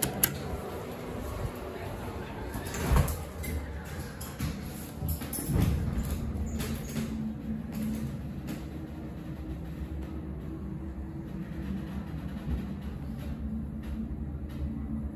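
Hydraulic elevator heard from inside the car: a few knocks and clunks over the first six seconds as the doors shut and the car starts off, then a steady low hum as the car travels down.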